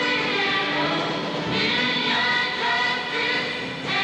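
A large group of singers performing together in chorus, holding notes that change every second or so.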